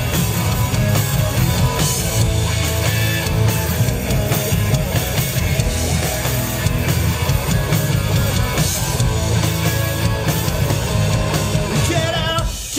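A live punk rock band playing an instrumental passage with no singing: electric guitar and drum kit, loud and steady throughout.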